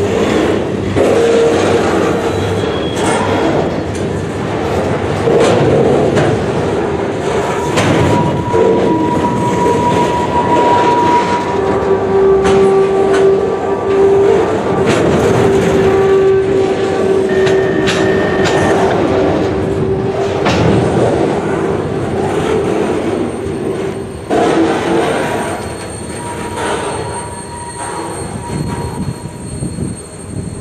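Freight train's flatcars rolling past at close range: a steady rumble of steel wheels on rail, with clicks over rail joints and drawn-out metallic wheel squeals, the longest lasting several seconds midway. The sound eases off near the end as the train moves away.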